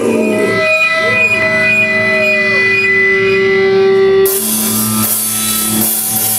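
Amplified electric guitars ringing out long sustained notes on stage, several pitches held steady, with one sliding down about halfway through. A steady hiss joins suddenly about four seconds in.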